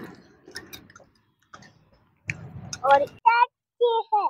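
Faint clicks and smacks of a person chewing food close to a clip-on microphone, followed about three seconds in by a short burst of speech.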